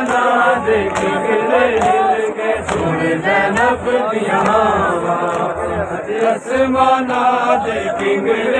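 A crowd of men chanting a Muharram mourning lament (noha) together, the voices loud and wavering in pitch, with sharp slaps of matam (hands striking chests) scattered through it.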